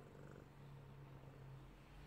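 A twenty-year-old black-and-white cat purring softly and steadily while being stroked, close to the microphone; the purr fades near the end.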